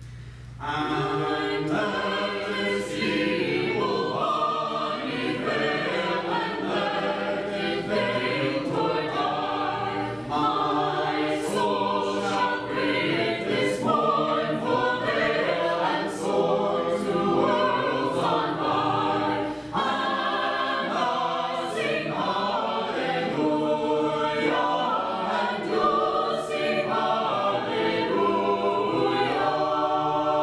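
Small mixed choir of men's and women's voices singing an Orthodox liturgical hymn a cappella in harmony, coming in about a second in.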